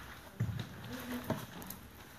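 Footsteps and shuffling on a wooden parquet floor as people move and sit down, with two soft thumps, the first about half a second in and the second just past a second.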